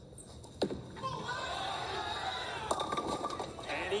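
A bowling ball drops onto the lane with a sharp thud just after the start, and crowd noise builds while it rolls. A loud crash of the ball hitting the pins comes a little under three seconds in. It is heard through a television's speaker.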